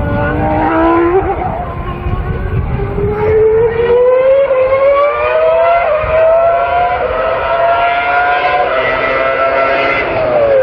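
Racing car engine at high revs, its note climbing gradually in pitch over several seconds with a few small jumps along the way.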